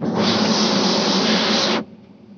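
A single burst of compressed air hissing from a nozzle held into a ceramic toilet's trap during glazing. It starts abruptly and cuts off sharply after nearly two seconds.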